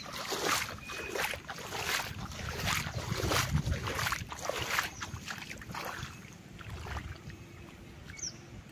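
Legs wading through knee-deep water, splashing and sloshing about twice a second. The splashes grow weaker after about five seconds.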